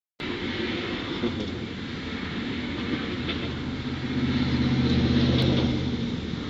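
Motor vehicle passing: a low engine hum over a steady rush of traffic noise swells to a peak about five seconds in, then eases off.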